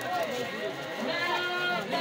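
Men's voices chanting and calling out in a crowd, several overlapping, with one long held, wavering note just after the middle.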